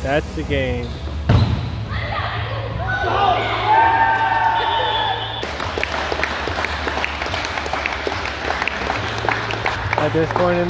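An indoor volleyball game in a gym hall: a ball is struck with a loud thud about a second in, among players' shouts. From about halfway there are many quick knocks and hand claps.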